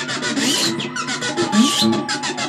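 Electric guitar, a Jazzmaster-style offset, played with fast, even picking at about ten strokes a second, with a couple of notes sliding up in pitch.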